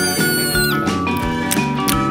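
Cheerful cartoon background music. In the first second, a high cartoon cat voice calls out like a meow, holding its pitch and then sliding slightly down.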